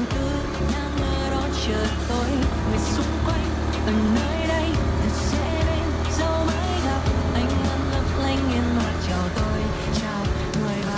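Background music over the steady low hum of a Honda Winner 150 motorcycle being ridden; the hum drops away just before the end.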